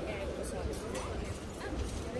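Outdoor pedestrian street ambience: voices of passers-by talking nearby over a steady low rumble of the square.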